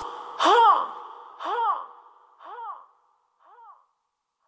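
Echo tail of a rap track's closing vocal ad-lib: one short call, rising then falling in pitch, repeats about once a second after the beat has stopped, each repeat quieter until it fades away.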